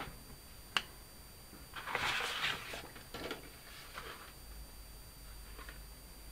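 Quiet handling sounds at a craft table: a single sharp click about a second in, then short rustles of cardstock around two to three seconds in, with fainter ones after.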